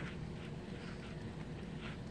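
Heavy rain falling as a steady, even hiss, with rainwater running into the gutters.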